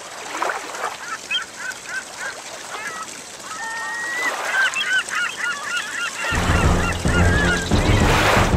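Birds calling in quick, short, chirping notes that grow busier over the second half, over some splashing water. Low music with a steady drone comes in about six seconds in.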